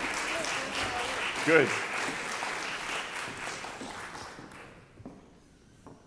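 Audience applauding in a hall, fading out about four to five seconds in. A voice rises briefly over the clapping about a second and a half in.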